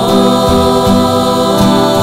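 Rondalla music: a mixed choir of male and female voices holds a sung chord over strummed acoustic guitars, with a couple of fresh strums partway through.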